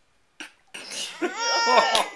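A toddler vocalizing: a breathy, cough-like start runs into a drawn-out, high-pitched whine. A sharp click comes just before the end.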